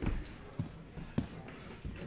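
A climber's shoes and hands knocking against the holds of an indoor climbing wall as he moves: about four separate thuds, the sharpest a little over a second in.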